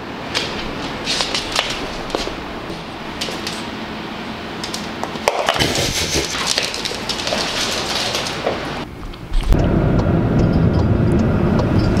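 A dog's claws clicking and scraping on a hardwood floor as it trots about. About nine and a half seconds in this gives way suddenly to the steady low rumble of a car's cabin on the road.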